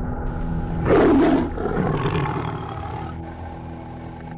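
Big-cat snarl sound effect for a segment intro, over a steady low drone; the snarl is loudest about a second in, then the sound slowly weakens.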